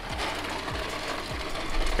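Razor Crazy Cart, running on an upgraded 36-volt battery, rolling across asphalt: a steady mechanical rattle from its geared electric drive and small hard wheels. It grows louder near the end as the cart comes close.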